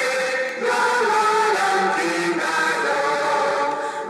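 Mixed church choir singing together in held, sustained notes, with a brief break in the phrase about half a second in.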